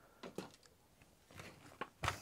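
A few faint, separate clicks and taps of plastic as hands take hold of a Nerf blaster's barrel assembly and shell.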